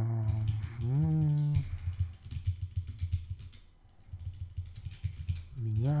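Computer keyboard typing: a quick run of key clicks from about a second and a half in until near the end, between short wordless hums from a man's voice.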